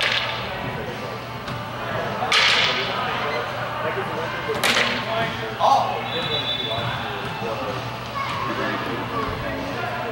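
Practice longswords striking and clashing in sharp cracks, about three times in the first five seconds, the sharpest just under five seconds in, over the low chatter of a sports hall.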